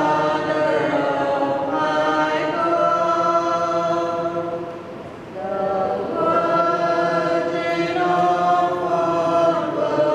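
Church choir singing the closing hymn after the dismissal, in long held notes. One phrase ends about five seconds in and the next begins after a short breath.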